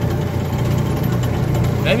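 Antique-style track-ride car running steadily along its guided track: an even low hum from the car's motor and running gear, with no change in speed.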